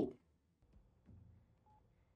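Faint low background rumble from the episode's soundtrack, with one short single-pitched beep near the end.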